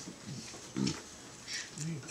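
A few brief, quiet voice sounds from people in the room, short chuckles or murmurs with pauses between them.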